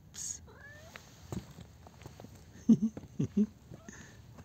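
A tabby cat gives a short rising meow just after a brief hiss at the start. A few loud, low thumps follow later on, the loudest sounds here.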